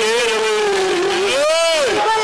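A voice crying out in loud, drawn-out prayer: a long held cry that slides slowly down in pitch, then a second cry near the end that rises and falls.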